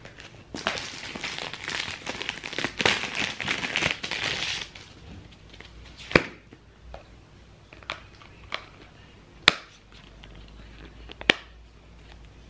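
Plastic packaging of a phone case crinkling as it is unwrapped for about four seconds, then a handful of sharp clicks as the phone is pressed into the clear case.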